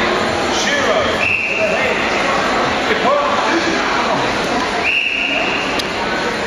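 Two short whistle blasts on one steady high pitch, the first about a second in and the second, longer one near the end, over constant crowd chatter echoing in a large sports hall.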